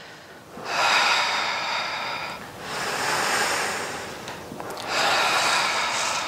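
A woman breathing loudly and slowly, paced to a Pilates reformer leg exercise: three long breaths of about two seconds each, starting about half a second in.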